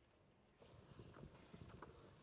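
Faint footsteps of shoes on a wooden stage floor, a run of irregular knocks that starts about half a second in over a low room hiss.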